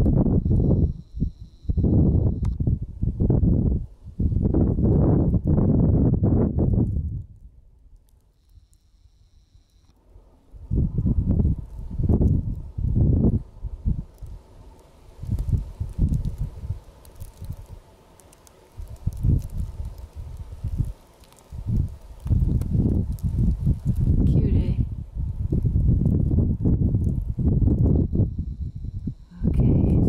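Wind buffeting the camera's microphone in loud, irregular gusts, with a short lull about eight seconds in.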